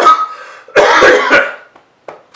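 A man coughing hard after choking on a sip of water: one burst at the start, then a longer fit of several coughs from about a second in.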